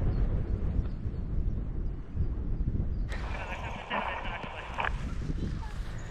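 Wind buffeting the microphone of a body-worn camera in a steady low rumble. A brighter, higher noise joins it for about two seconds, starting about three seconds in.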